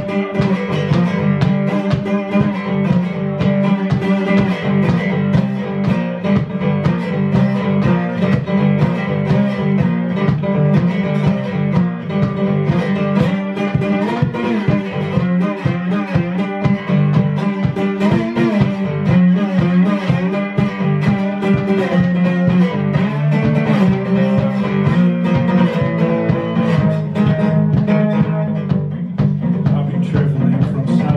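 Instrumental blues: a cigar box guitar played with a slide, its notes gliding up and down, over a steady beat of hand percussion on a cajon.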